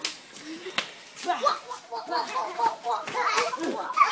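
Children's voices shouting and chattering, with two sharp smacks in the first second, the second one the louder.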